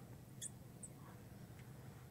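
Faint, brief squeaks of a felt-tip marker writing on a glass lightboard, a couple of short high chirps in the first second, over near-silent room tone.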